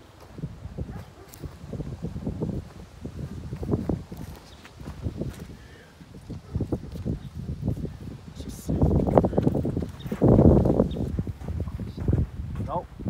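Footsteps on dirt and grass with handheld camera handling noise, a run of irregular low thuds; a louder, rougher stretch about nine to ten seconds in.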